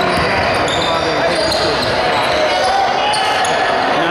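Basketball being dribbled on a hardwood gym floor, with short high squeaks and players' and spectators' voices, all echoing in the large gym.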